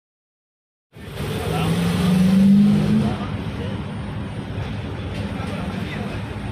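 Silence for about the first second, then a vehicle engine rising in pitch, loudest about two and a half seconds in, which settles into a steady background noise.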